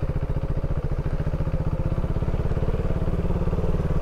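KTM 390 Duke's single-cylinder engine running steadily at idle, an even, fast-pulsing engine sound with no revving.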